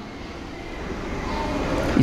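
A steady, low rumbling noise that gradually grows louder.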